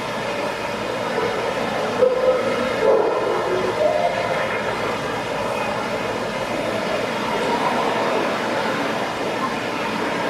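Steady, reverberant hall noise from an indoor show arena, with the murmur of a crowd. A few brief louder sounds stand out about two to four seconds in.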